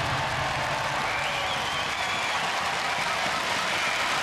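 Studio audience applauding steadily, with a few faint high-pitched calls over the clapping.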